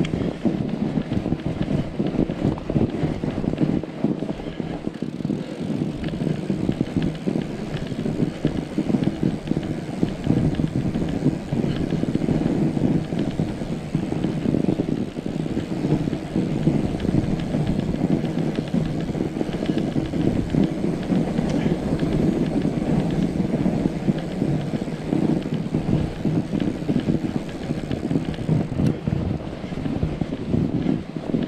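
Fat bike riding along a snow-covered trail: a steady, dense rolling noise from the wide tyres on snow and the bike's rattle, heard close from a handlebar-mounted camera.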